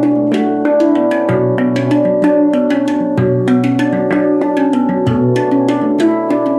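Zen handpan tuned to B Celtic minor, played with the fingers: a quick stream of struck steel notes that ring on over one another, with a low bass note coming back about every two seconds.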